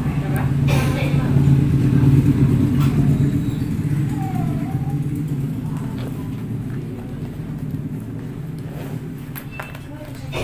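A steady low rumble, loudest about two seconds in and then slowly fading, with faint voices in the room.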